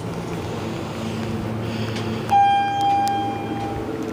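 Elevator chime ringing once, a single bell-like ding about two seconds in that fades over a second and a half, over a low steady hum.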